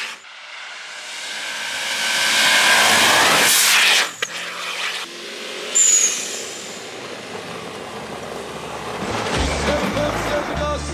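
Subaru Forester STi's turbocharged flat-four engine and tyres churning through snow, building over the first few seconds and then cutting off abruptly about four seconds in. Music with a bass beat comes in near the end.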